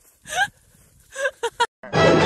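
A person's short startled gasps and yelps, in two brief groups, one of them rising in pitch. Just before the end a loud inserted clip of music and voice cuts in.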